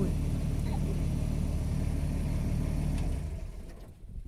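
A car engine idling with a steady low hum, which stops about three seconds in and dies away within about half a second.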